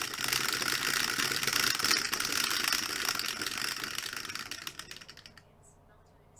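Two dice rattling rapidly against a clear plastic dome dice roller and its felt base, a dense stream of small clicks that fades and stops about five seconds in as the dice settle.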